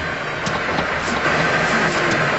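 A car engine running hard with its wheel spinning on dynamometer rollers: a steady rushing noise with a thin high whine that grows slightly louder.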